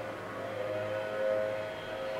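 Outdoor civil-defense warning siren sounding a steady, sustained tone with two close pitches, swelling slightly about midway. She takes it for the weekly siren test going off on the wrong day, since it normally sounds only on Tuesdays.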